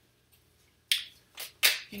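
A tarot deck handled and shuffled in the hands: a sharp card snap about a second in, then two brief rustles of cards near the end.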